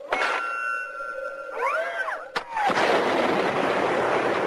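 Action-film sound effects of a tank being blown up: a held high electronic tone with short sweeping glides, a sharp crack a little after two seconds, then a loud, long explosion.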